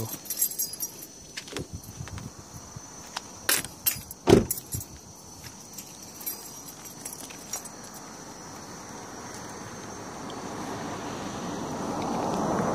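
A few scattered clicks and knocks, the loudest about four seconds in, then a rushing noise that swells steadily toward the end over a faint, steady high-pitched whine.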